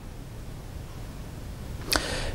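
Steady hiss of open-microphone room noise, with a short click near the end.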